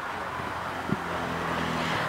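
Steady background rumble, like road traffic, that grows slightly louder, with a single knock about a second in as the handheld microphone is passed to the next speaker.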